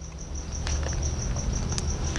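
A cricket chirping in a steady, evenly pulsed high trill, over a low background hum, with a couple of faint clicks from the book's pages being handled.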